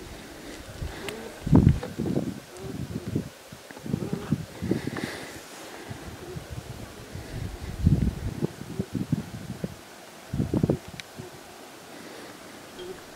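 A North American beaver gnawing on a twig on the ice: irregular clusters of short, low chewing noises, loudest about a second and a half in and again near eight seconds.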